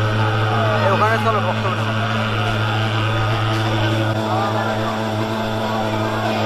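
Handheld pulse-jet thermal fogging machine running, a steady low buzzing drone as it blows out insecticide fog against mosquitoes.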